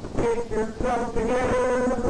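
A harsh, buzzing, distorted sound with a wavering, warbling pitch, cutting in abruptly; glitchy tape-style audio.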